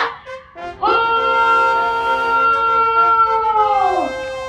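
A drill instructor's long drawn-out shouted word of command to a parade: one held call of about three seconds that starts about a second in and drops in pitch as it ends.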